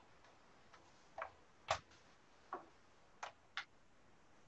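Five short, sharp clicks at uneven intervals over quiet room tone, the second one the loudest.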